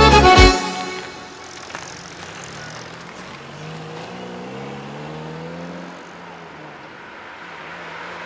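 The last notes of an accordion-led instrumental kolo cut off about half a second in. After that a car engine runs over steady road noise, its note rising slowly as the car pulls away.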